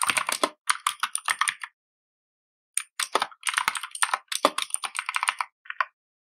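Typing on a computer keyboard: a quick run of keystrokes, a pause of about a second, then a longer run of fast keystrokes.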